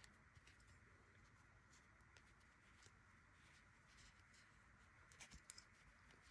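Near silence: faint rustling and small ticks of acrylic yarn being handled and drawn through crochet stitches, over room tone, with a few slightly louder rustles about five seconds in.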